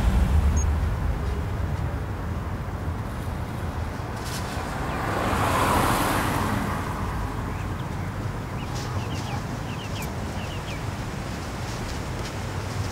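Street ambience of road traffic. A deep low rumble dies away at the start, and a passing car swells and fades about six seconds in. A few faint short chirps come near the end.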